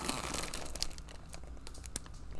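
Plastic poly mailer bag crinkling as it is lifted and handled, a string of irregular small crackles.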